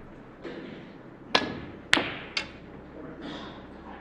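Snooker balls clacking: three sharp clacks about half a second apart, the last one lighter, as the cue ball is struck and hits the green ball. A soft knock comes just before them.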